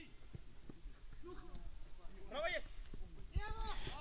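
Faint shouts and calls of voices out on the pitch, a few short ones spread through the moment over low open-air background noise.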